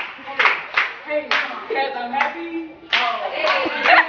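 A small group clapping hands to a beat, roughly two claps a second, with voices calling out over the claps.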